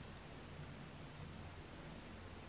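Near silence: faint steady room tone, a soft hiss with a low hum beneath it.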